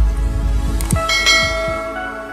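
Intro jingle for a logo animation: a deep bass swell with sharp clicks, then bell-like chiming tones that ring out from about a second in and slowly fade.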